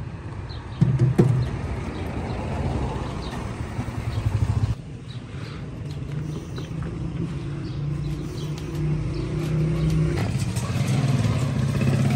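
Small engine of a motor-tricycle cart running steadily, with a few clatters about a second in. It grows louder near the end.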